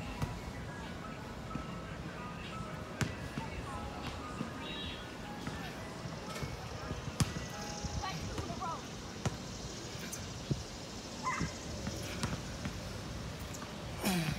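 Outdoor park ambience: a steady background hum with scattered sharp knocks of basketballs bouncing on a nearby court, and short chirps and whistled notes now and then.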